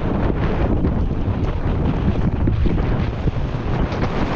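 Wind buffeting an action camera's microphone on a fast mountain-bike descent, over a steady rumble of tyres on a dirt trail, with frequent small knocks and rattles of the Kross Soil 1.0 bike over bumps.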